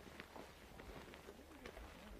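Near silence: faint outdoor ambience with a few faint, scattered ticks.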